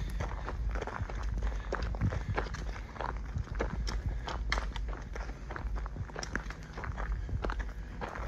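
Footsteps crunching on a gravel driveway at a steady walking pace.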